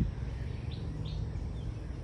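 Open-air ambience: a steady low rumble with a few short, faint bird chirps in the first half.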